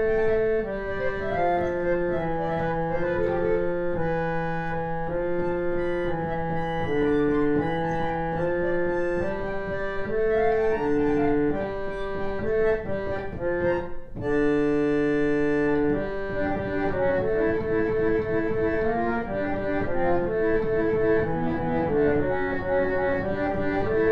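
Vintage 1950s Yamaha reed organs (pump organs) playing slow, sustained medieval-style counterpoint, with a reedy, buzzy organ tone. About two-thirds of the way through a long chord is held, after which the upper part moves in quicker, shorter notes.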